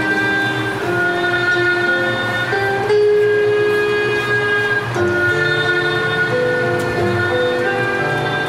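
Haegeum duet, Korean two-string bowed fiddles, playing a slow melody in long held notes that move to a new pitch every second or so.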